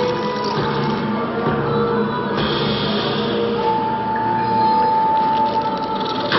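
Slot machine bonus-game music and electronic tones over a constant casino-floor din. A higher layer of tones comes in a little over two seconds in, and a long held note starts just past halfway.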